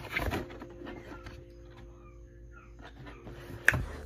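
Cardboard shoebox being handled and opened: a brief rustle of cardboard at first, then soft handling noise, and one sharp knock near the end.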